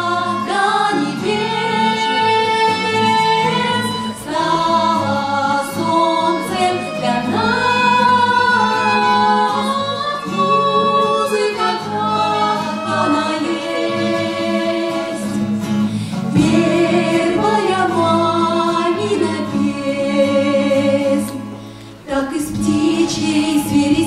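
A small ensemble performing a song: women's voices singing, accompanied by acoustic guitar and violin.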